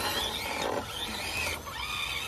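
Electric motors of two small RC rock crawlers whining as they climb rock, the pitch rising and falling with the throttle, with a rough scrabbling noise in the first second.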